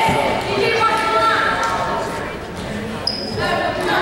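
A basketball bouncing on a hardwood gym floor, dribbled by a player at the free-throw line, with spectators' voices echoing around the hall.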